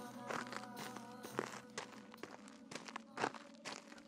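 A music cue dies away in the first second, leaving a quiet cartoon soundtrack with scattered soft taps and clicks, the most distinct about a second and a half in and a little after three seconds.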